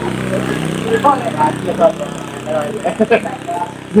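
Scattered snatches of men's voices over a steady low hum of an idling engine.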